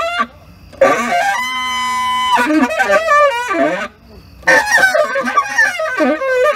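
Tenor saxophone played in free improvisation: two loud phrases of bending, wavering notes separated by short pauses, the first holding one steady note for about a second.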